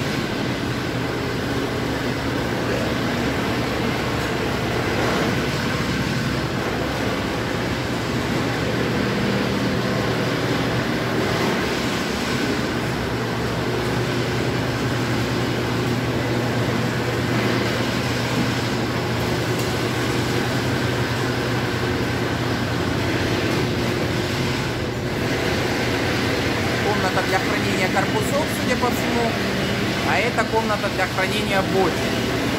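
Steady running noise of an industrial honey-extraction line, its machinery droning with a constant low hum.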